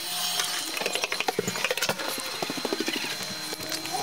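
Sped-up recording of footsteps: a rapid, irregular clatter of taps, with a cluster of short, high chirpy sounds in the middle.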